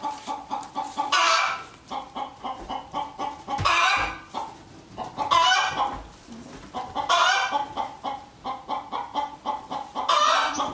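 Chickens clucking in quick short notes, with a louder, drawn-out squawk breaking in about every two seconds.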